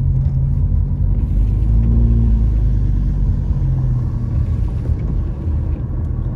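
Car engine and road noise heard from inside the cabin while driving: a steady low rumble, with the engine note rising a little about two seconds in and then easing off.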